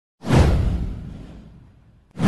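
Whoosh sound effect for an animated intro graphic: a sudden swell that sweeps down in pitch onto a deep rumble and fades away over about a second and a half.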